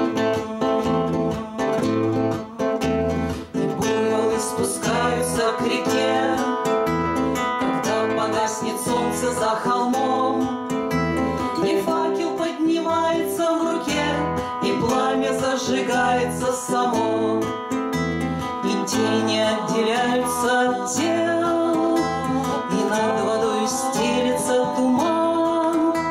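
Two acoustic guitars strummed in a steady rhythm, with bass notes on roughly every beat, while two women sing together in the style of a Russian bard song.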